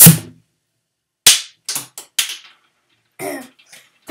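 The cap of a shaken, pressurized plastic soda bottle shoots off with a loud pop as it is swiped loose. About a second later there is a sharp knock, then three smaller quick knocks.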